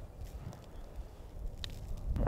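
Faint low rumble of outdoor background, with a single light click about one and a half seconds in.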